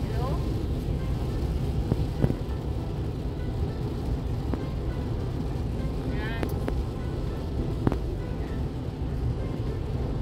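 Steady road and engine noise inside a moving car's cabin at highway speed. A couple of sharp clicks come about two seconds in and again near eight seconds, and a short wavering tone is heard a little after six seconds.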